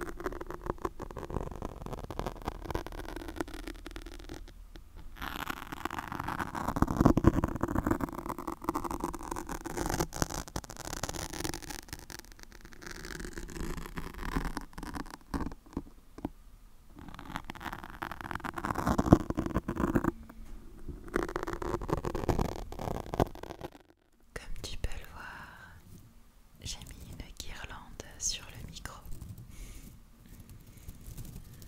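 Long fingernails scratching and rubbing a foam microphone windscreen right against the microphone, in long stretches broken by short pauses. Near the end the scratching stops and a tinsel garland crinkles against the microphone.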